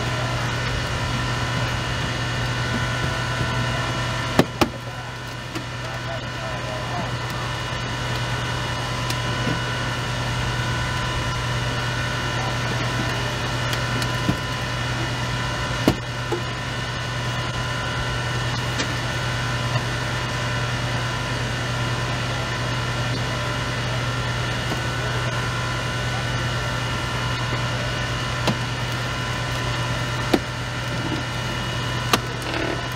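Hydraulic rescue-tool power unit running steadily with a constant engine drone while the spreaders and cutters work on a crashed minivan's door, with a few sharp cracks of metal and glass giving way.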